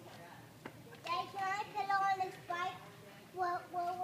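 A young child's voice making drawn-out, sing-song sounds without clear words, starting about a second in and coming in several short phrases.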